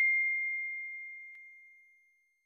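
Notification-bell 'ding' sound effect from an animated subscribe button: a single high bell tone rings out and fades away, with a faint tick partway through.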